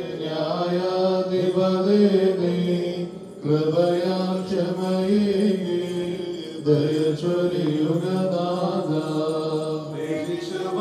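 Syriac Orthodox liturgical chant sung by a male voice into a microphone, in long drawn-out phrases with short breaks about three and six and a half seconds in.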